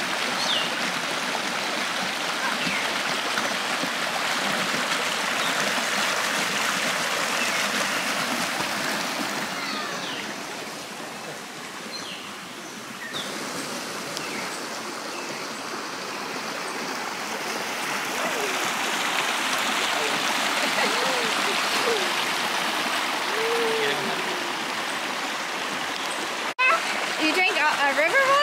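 Shallow rocky river running over small cascades: a steady rush of water that dips briefly about halfway through, then rises again.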